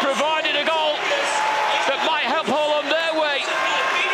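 A man commentating on a football match, talking without pause over a steady hum of stadium crowd noise.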